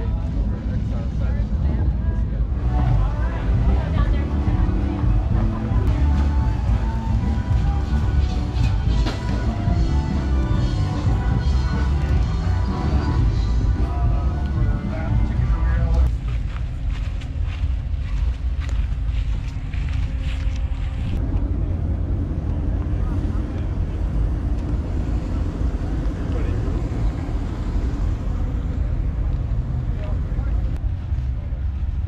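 Wind rumbling on the microphone, with music and people's voices in the background through the first half; about halfway through, the music and voices drop away and the wind rumble carries on.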